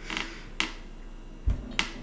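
Glass mason jar with a metal screw lid being handled and set down on a table: a short rustle, then two sharp clicks about a second apart with a low thump between them.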